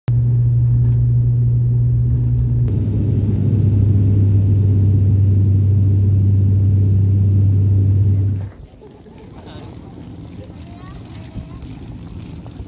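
Loud, steady low drone of a passenger aircraft's engines heard inside the cabin. It changes slightly a few seconds in and cuts off abruptly about eight and a half seconds in, giving way to much quieter outdoor background.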